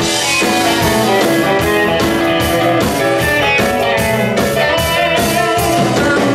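Live blues-rock band playing: electric guitar over bass, keyboards and a drum kit keeping a steady, driving beat.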